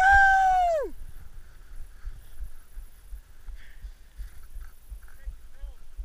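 A man's long, drawn-out shout in the first second, its pitch held high and then dropping away. After it, uneven low thumps of wind buffeting the camera's microphone, with a few faint short calls near the end.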